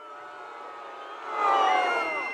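Large rally crowd reacting, a swell of many voices calling out and whistling that rises about a second and a half in.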